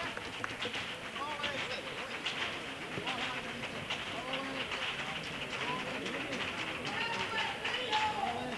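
Theatre audience applauding, a dense steady patter of many hands clapping, with scattered voices and shouts in the crowd, just after a sung carnival piece has ended.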